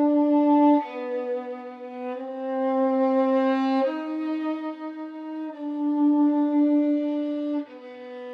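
Solo violin playing unaccompanied, bowing long held notes that change about every one to two seconds.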